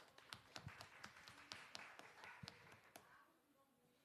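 Faint, irregular taps and clicks, about three or four a second, over faint murmured voices away from the microphone; both die away about three seconds in.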